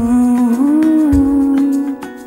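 Background music from a slow pop ballad, with a singer holding one long, steady note that rises slightly midway.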